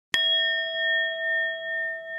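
Notification-bell sound effect: a single bright ding struck just after the start, ringing on as a steady chime that wavers gently in loudness as it slowly fades.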